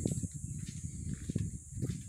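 Wind buffeting an outdoor microphone, a low, uneven rumble, over a steady high-pitched hiss, with a few faint ticks.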